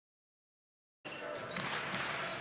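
Silence, then about a second in the game sound cuts in suddenly: a basketball being dribbled on a hardwood court amid the steady background noise of a large arena.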